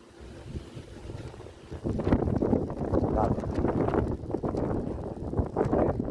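Wind buffeting the phone's microphone, starting up about two seconds in and staying rough and gusty.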